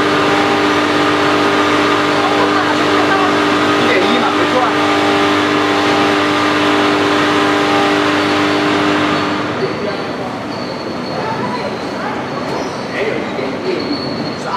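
Vertical packing machine running with a steady hum of several fixed tones, which stops about nine and a half seconds in, leaving a rougher, quieter background with a faint high tone and a few clicks.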